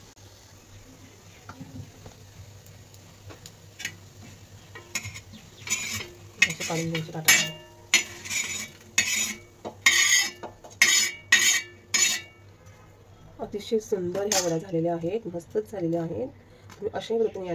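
A steel spatula clinks and scrapes against an iron tava and a steel plate as fried coriander vadis are lifted off the pan. There are about a dozen sharp metal clicks and scrapes over several seconds in the middle.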